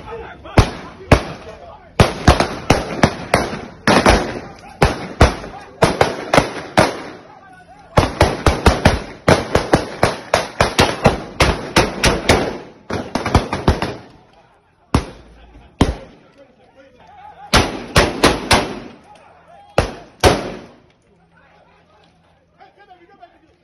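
People shouting amid a long series of sharp, loud cracks, often several a second in quick clusters. The cracks thin out about two thirds of the way through and come back in short bursts near the end.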